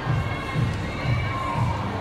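Music with a steady bass beat, about two beats a second, playing under the chatter and calls of a crowd in the fair hall.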